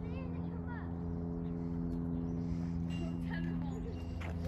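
A steady low machine hum made of several held tones, unchanging throughout, with faint voices calling near the start.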